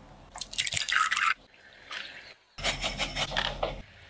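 Thick egg-yolk cake batter in a glass bowl being stirred and dripping off the utensil, giving wet, squelching mixing sounds in two loud bursts of about a second each, with a short break between them.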